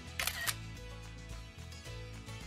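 A single camera-shutter click from an iPad taking a photo, heard about a quarter second in over steady background music.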